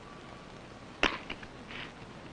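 A revolver being handled: one sharp metallic knock about a second in, then two lighter clicks, over the steady hiss of an old film soundtrack.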